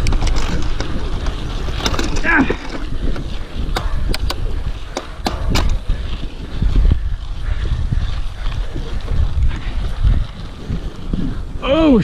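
Mountain bike rolling over a dirt singletrack, with wind buffeting the GoPro's microphone and sharp clicks and rattles from the bike over bumps. A short vocal exclamation about two seconds in, and another voice just at the end.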